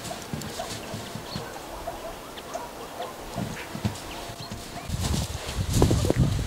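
Footsteps crunching and thudding in deep snow, scattered and uneven, growing heavier near the end.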